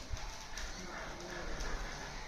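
Steady outdoor background noise, an even hiss with faint, indistinct sounds under it.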